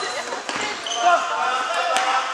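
Indoor futsal play in a reverberant sports hall: voices of players and spectators, shoes squeaking on the court floor, and a sharp knock of the ball just before the end.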